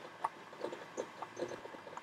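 A hand-held round high-speed steel tool bit cutting a chip from a metal workpiece spinning in a small lathe, heard as faint, irregular clicks and scrapes.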